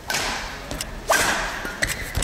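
Badminton racket strings hitting a shuttlecock during a rally: two sharp, whip-like strikes about a second apart, the second louder, each ringing on in a large hall.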